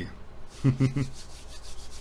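Hands rubbing together, a soft dry rasping, with a brief voiced sound from the man about half a second to a second in.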